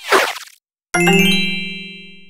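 Title-animation sound effects: a short whoosh falling in pitch, then about a second in a bright chime struck once that rings and fades away over about a second and a half.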